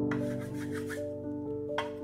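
Steel cleaver blade scraping and pressing across a floured wooden board as pastry dough is flattened: a long rasping rub through the first second, then a short sharp scrape near the end. Background music with sustained notes plays under it.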